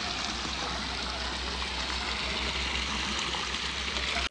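Stream water spilling over a low rocky ledge into a pool, a steady, even rush.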